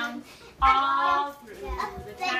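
Young children's voices without clear words: one child holds a drawn-out, high-pitched sung or called note for most of a second, with other children's voices around it.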